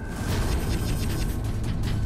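Dramatic sound effect from a TV serial's background score: a dense, rapid rattling of clicks over a low rumble.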